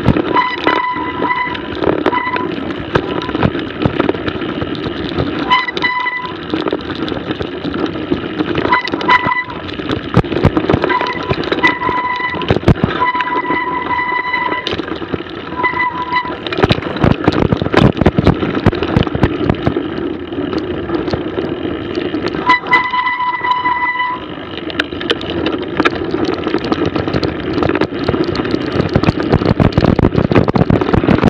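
Mountain bike riding down a snowy trail: a steady rush of tyre and wind noise, with frequent knocks and rattles from the bike over bumps. Several times, the brakes squeal briefly at one steady high pitch.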